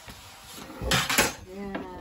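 Two quick clinks of metal kitchenware close together about a second in, followed by a brief voice near the end.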